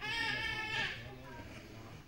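A child's drawn-out, high-pitched shout lasting just under a second, then fading.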